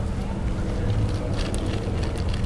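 Steady low outdoor rumble, with a faint voice just after the start and a few light clicks in the second half.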